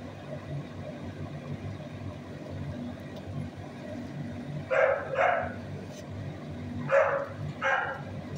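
A dog barking: four short barks in two pairs, about two seconds apart, over a steady low hum.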